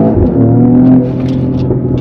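Mercedes-AMG GLE 53 Coupé's turbocharged inline-six pulling at about half throttle, heard from inside the cabin. The engine note climbs, dips with a low thump about a quarter second in as it shifts up, then holds steady and falls away about a second in as the throttle eases.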